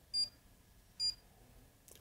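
Panasonic Aquarea H Generation heat pump controller giving two short, high key-press beeps about a second apart as its buttons are pressed.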